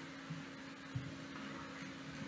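Faint room tone: a steady low hum over light background hiss, with a couple of small soft bumps.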